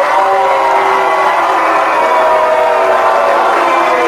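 A large audience cheering and applauding, loud and steady, with many voices holding long shouts over the clapping.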